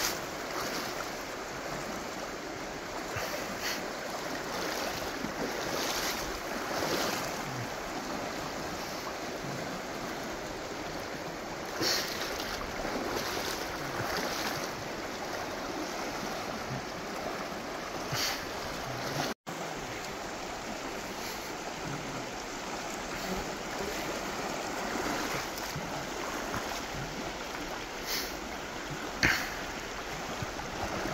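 Steady rush of a shallow river running over riffles and around a wading angler's legs, with a few brief louder splashes.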